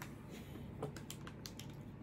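A string of light, faint clicks and taps, several in quick succession between about half a second and a second and a half in, as a small hard object is handled.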